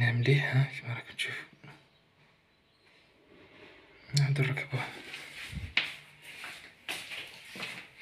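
A person speaking in short phrases, with a pause of near silence about two seconds in.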